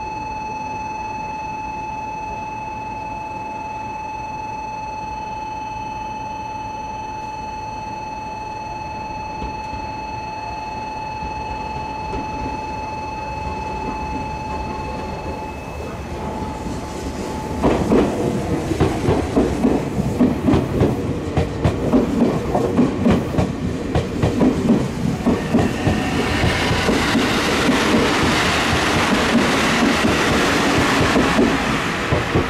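Meitetsu 1700 series electric train passing, its wheels clattering over the rail joints in a quick rhythm that grows louder near the end. Before the train comes in, a steady high tone sounds for about the first half.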